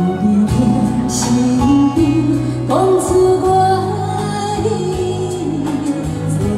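A woman singing a pop song live into a handheld microphone over a backing track, amplified through a PA, with long held notes.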